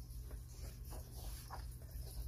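Coloring book page being turned by hand: a few faint, short paper rustles and brushes over a steady low hum.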